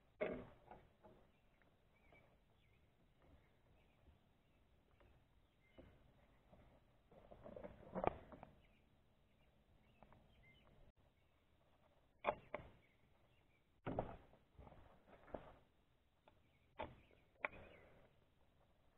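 Mostly near silence with scattered faint clicks and knocks, a few sharper ones in the second half: hands threading bolts by hand into a Mercury 15hp outboard's lower unit.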